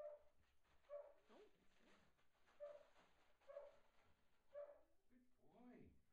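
Dog giving five short, soft calls, about one a second.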